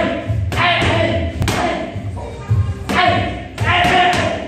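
Boxing gloves striking focus mitts in a run of sharp smacks, with a gap in the middle and a quick pair near the end. Background music with a steady beat runs underneath.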